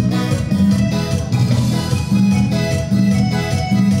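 Latin dance music led by an electronic keyboard, with a steady bass line and beat.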